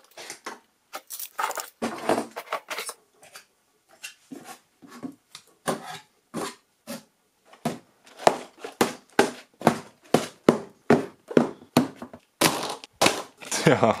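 A quick, irregular series of short knocks and clicks, sparse at first and denser and louder in the second half, as LEGO models and boxed sets are moved about and set down on a tabletop.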